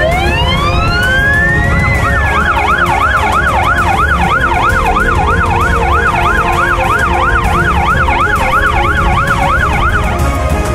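Electronic emergency siren: one rising wail for about two seconds, then a fast yelp sweeping up and down about three times a second, which cuts off near the end. Background music plays underneath.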